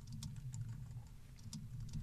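Typing on a computer keyboard: light, irregular key clicks as a sentence of notes is typed.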